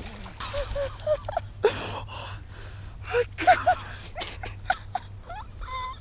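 A man gasping and breathing hard in excitement with short broken exclamations, after hooking a big bass.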